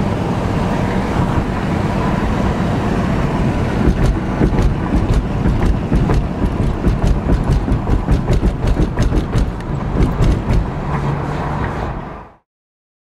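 Vehicle road and wind noise from a car moving along a highway: a steady loud rumble and hiss, joined from about four seconds in by many short sharp crackles of wind buffeting or rattles.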